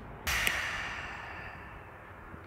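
A woman's long, breathy sigh, starting about a quarter second in and fading out over about a second.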